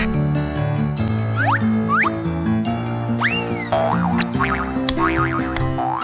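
Children's cartoon background music playing steadily, with springy sound effects laid over it: several quick rising pitch glides, one arching up and falling back about three seconds in, as the animated toy pieces move into place.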